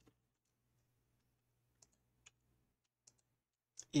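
A few faint, isolated computer keyboard keystrokes, spaced irregularly as code is typed into an editor.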